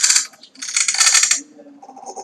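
Choppy, stuttering playback of the dialogue track as the Blender timeline is scrubbed: the voice comes out as rapid, even clicking fragments in two bursts about half a second apart, with a fainter one near the end.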